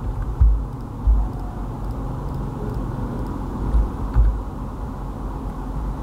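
Steady low background rumble, with several dull low thumps scattered through it.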